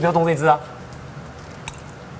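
A person's voice speaks briefly at the start, then low room tone with one faint click about one and a half seconds in.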